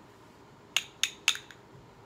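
Three quick, light clinks about a quarter second apart, each with a brief high ring, as a small hard object is handled in the fingers.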